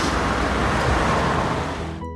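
Street traffic noise: a steady rumble of passing road vehicles that eases off near the end.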